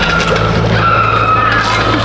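Loud amplified music with long, sliding high tones over a steady low drone.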